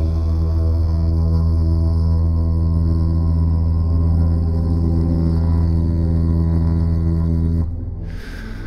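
A deep, steady drone held on one breath for about seven and a half seconds, stopping shortly before the end, over soft background music.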